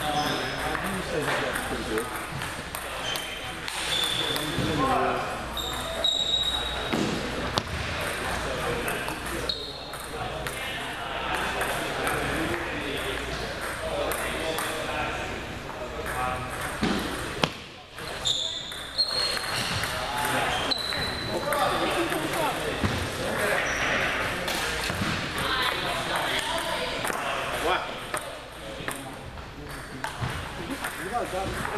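Table tennis balls clicking off paddles and tables at several tables at once, over background voices, echoing in a large gym hall.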